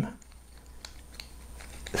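A few faint, small clicks of plastic parts being handled: the Bondtech LGX Lite extruder body being turned over in the fingers.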